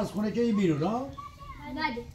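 Speech: a child talking in a rising and falling voice.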